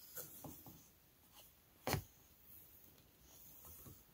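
Quiet handling of a tablet-weaving loom: soft rustles and scrapes as a wooden shuttle is passed through the silk warp, with one short sharp tap about two seconds in.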